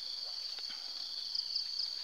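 Insects chirring steadily at a high pitch, with a few faint clicks about half a second in.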